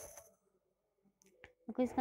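A short, sharp click at the start, then quiet with a couple of faint small clicks, and a voice begins speaking near the end.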